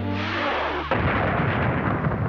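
A loud cartoon blast sound effect as the bedside candle is put out: a rush of noise that breaks into a dense burst about a second in and carries on to the end.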